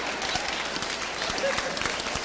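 Theatre audience applauding, a dense patter of many hands clapping, with some laughter mixed in.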